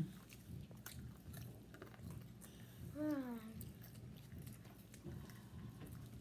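Quiet chewing and biting of food, with scattered small mouth clicks. A short hummed "mm" falls in pitch about three seconds in.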